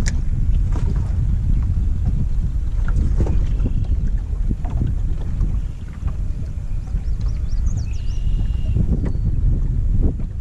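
Wind buffeting the microphone: a steady low rumble, with a few faint high chirps near the end.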